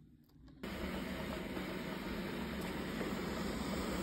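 Narwal T10 robot vacuum's suction motor running steadily with a hiss and low hum, switching on abruptly about half a second in. The motor that had stopped with a malfunction error is running again, its dirty internal filter cleaned.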